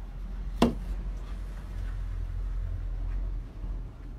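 A single sharp knock of wood on a wooden workbench about half a second in, followed by low rumbling handling noise.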